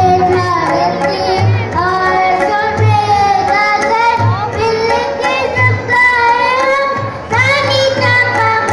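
Children singing a song together, accompanied by hand drums that give a low stroke roughly every second and a half.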